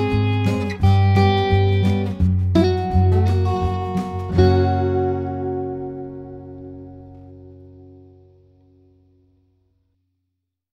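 Background instrumental music with plucked notes. A final chord about four and a half seconds in rings out and fades away to silence over the next five seconds.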